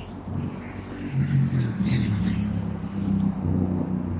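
A car engine running close by on the street, a low hum that grows louder about a second in and shifts in pitch, over faint traffic noise.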